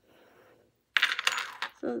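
Handling noise of a phone in a hard plastic case: a quick cluster of sharp clicks and rattles, lasting under a second, about a second in.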